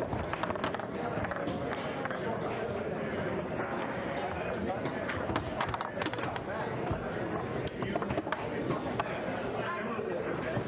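Foosball in play: scattered sharp clacks of the ball being struck by the plastic men and knocking around the table, over a steady murmur of background voices.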